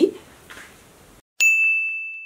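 A single bright, bell-like ding sound effect, a transition chime for a numbered title card, sounding once about one and a half seconds in and ringing down over about a second.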